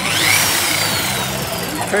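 Lake Country UDOS 51e polisher running in rotary mode: its motor whine rises sharply at the start, then slowly falls in pitch, over background crowd chatter.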